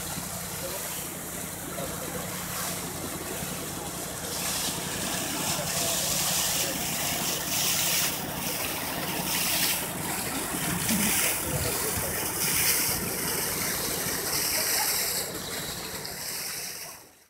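Rushing floodwater, with a steady low engine hum through roughly the first half.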